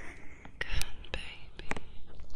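Surgical latex gloves worked close to a binaural ear microphone, giving several sharp clicks, the strongest under a second in and a quick pair near the end, under soft whispering.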